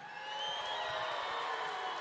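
Arena crowd cheering steadily, with a thin whistle over it in the first second.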